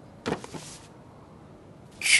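A sharp knock of a binder or book against the row of files, followed by a short swish as it is slid out from between them, about a quarter-second in. After that there is faint room tone.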